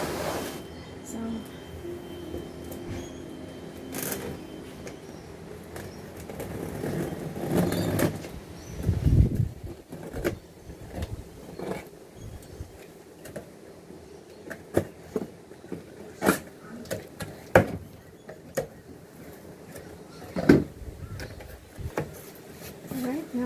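Cardboard box being handled and opened by hand: scattered taps, scrapes and rustles of the cardboard flaps and packing, with a low thud about nine seconds in.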